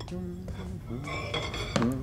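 Crockery set down on a desk with a ringing clink about a second in, amid soft voices.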